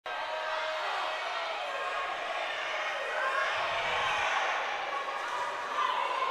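Crowd noise in a gymnasium: many spectators' voices chattering and calling out, steady throughout.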